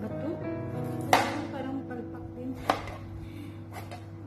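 Chef's knife chopping ginger on a plastic cutting board: three sharp knocks, the loudest about a second in, the next two more than a second apart. Background music plays throughout.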